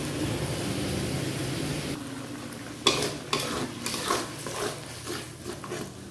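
Steady sizzling of hot oil in a kadhai for about two seconds, then a spoon scraping and knocking on steel as ground masala paste goes into the pan and is stirred.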